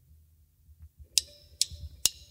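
Drumsticks clicked together to count the band in: two sharp wooden clicks in the second half, about half a second apart, over a faint low hum.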